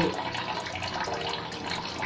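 Kitchen tap running in a weak stream into the sink while a glass is rinsed.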